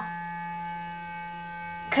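Clarisonic sonic brush running: a steady electric hum with several overtones from its vibrating bristle head, used here to blend cream contour.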